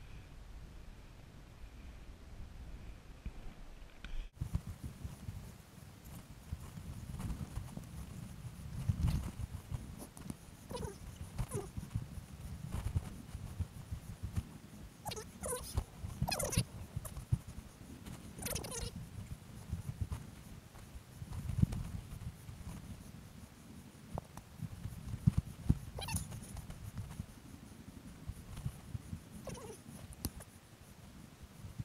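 Footsteps and scrambling of a hiker carrying a heavy loaded backpack up bare granite ledges, with pack and gear rubbing and short hard breaths. It starts a few seconds in and goes on as an irregular run of low thumps.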